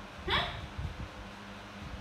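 A single short spoken "hả?" about a third of a second in, followed by quiet room sound with a few faint low knocks.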